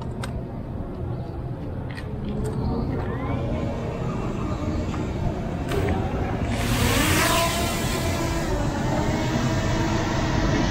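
DJI Mini 2 quadcopter's propellers spinning up about six and a half seconds in as it lifts off, then a steady high whine of its four motors and propellers as it climbs to a hover.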